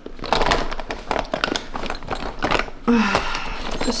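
Hands rummaging in a clear plastic zip pouch of nail-care items: the plastic crinkles and the small bottles and tools inside click and knock together in quick irregular bursts.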